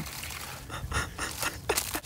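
Short crunches and crackles of an ice-coated branch and icy snow being stepped and pushed on, a cluster of them about halfway through and a couple more near the end.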